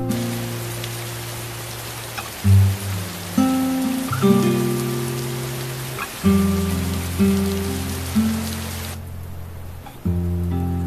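Steady rain under slow background music with held chords; the rain cuts off suddenly near the end.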